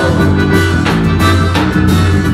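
Live band music led by a piano accordion over a steady bass line and drum beats, played loud through a PA.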